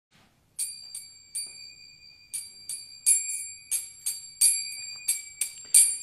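Small brass hand cymbals (kartals) struck in the kirtan three-beat pattern, starting about half a second in: four groups of three ringing strikes, with a steady high ring held between them.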